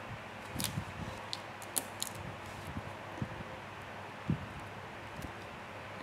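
Electric fan running steadily in the background, with a few light clicks in the first two seconds and a soft tap about four seconds in, from fingers pressing small adhesive half pearls onto a paper page.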